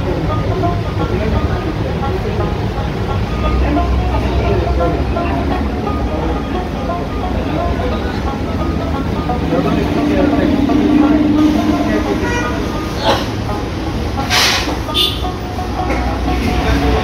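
Busy shop ambience: background voices over low street-traffic rumble, with a vehicle horn held for a second or two about ten seconds in and a couple of short sharp clatters near the end.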